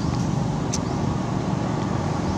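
Steady low rumbling background noise with a single sharp click about three quarters of a second in.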